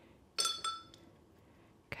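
Paintbrush clinking twice against a water jar, a quarter second apart, as it is dipped for water, each tap leaving a short ringing tone.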